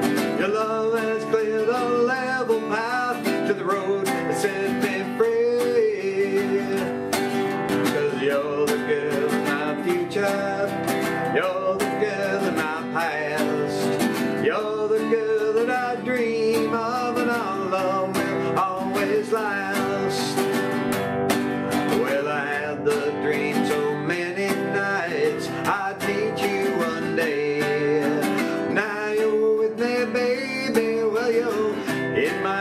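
Acoustic guitar strummed steadily in a country-folk style, with a rack-held harmonica playing a wavering melody over it as an instrumental break in the song.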